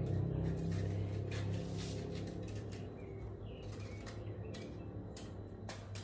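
Kitchen knife cutting a green pepper held in the hand: a string of short cuts at irregular intervals.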